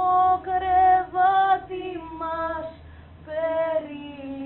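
A woman singing solo, holding long notes in short phrases, with a brief break a little before the end.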